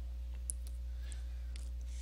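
A steady low hum with a few faint, short clicks in the first half.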